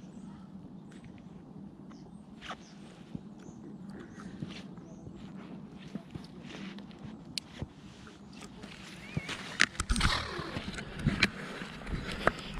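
Quiet outdoor background with scattered small clicks, then louder knocks and rustling from about ten seconds in as the ground-mounted action camera is picked up.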